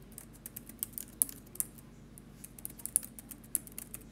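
Typing on a keyboard: quick, irregular key clicks as a short line of text is typed.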